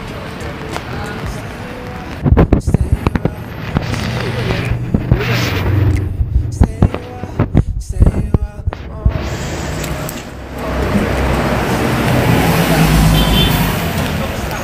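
City street traffic noise, with a run of loud knocks and thumps through the middle, then a vehicle passing close by, louder near the end.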